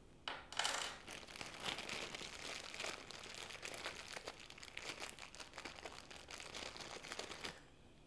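Small clear plastic bag of 3D-printer hardware crinkling quietly as it is handled and its contents sorted through, with many small clicks. It is louder briefly just after the start.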